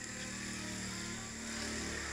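A faint, steady low motor drone, like a distant engine, with a steady high-pitched whine above it.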